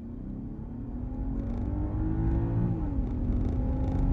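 2023 BMW 740i's turbocharged inline-six under full-throttle acceleration, heard muffled from inside the cabin. The engine tone rises under a low road rumble and grows louder, then drops about three seconds in as the transmission shifts up, and holds steady.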